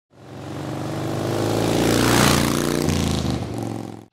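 Motorcycle engine revving as an intro sound effect. It builds from silence, is loudest about two seconds in, and steps in pitch before fading out.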